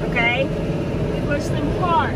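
Tractor engine running steadily, heard from inside the cab while baling hay. A few short pitched sweeps, like a voice, sound over it near the start and near the end.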